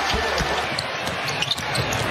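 Crowd noise in a basketball arena, with a basketball bouncing on the hardwood court: two low thumps in the first half second.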